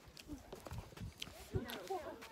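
Faint background voices of several people talking, with a few light taps.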